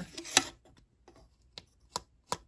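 A few sharp clicks from a small stamped-metal case being handled: one loud click a little under half a second in, then two fainter ones near the end.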